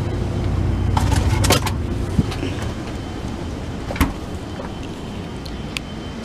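Camera handling noise: a low rumble that eases after the first second or two, with a few knocks and clicks as the camera is moved about.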